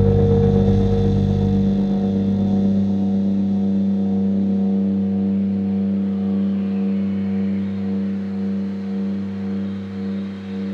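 Instrumental heavy psychedelic rock: a held, droning chord from guitars and bass. The deep bass note drops out about two seconds in, and the remaining held tones slowly fade with a regular pulse that swells into a wobble near the end.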